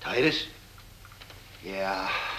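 Short bursts of a person's voice: a brief utterance at the start and another, lower-pitched one near the end, with quiet between.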